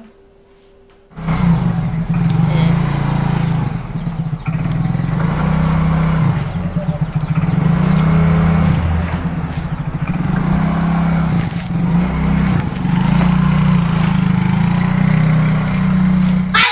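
Small automatic motor scooter's engine running and revving as it pulls away, starting about a second in, loud and close, with the pitch rising and falling with the throttle.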